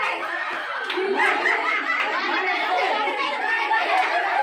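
A group of women chattering and laughing together, several voices overlapping.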